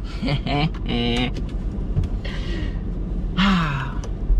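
A man's wordless laughing and short exclamations, with breathy exhales, over a low steady drone in a car cabin.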